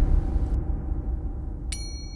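A low rumble fades away. Near the end comes a sudden bright metallic ding that keeps ringing: a subscribe-button sound effect.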